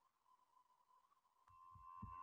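Near silence on a video-call feed with a faint steady tone. About a second and a half in, faint room noise and a few soft low thumps come in.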